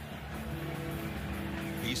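Music in a football stadium, with steady held notes over general crowd noise.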